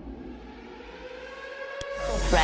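A faint sustained tone with a few overtones, gliding slowly upward in pitch, with a single short click near the end.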